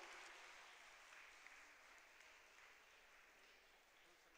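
Faint applause from an audience, slowly dying away to near silence.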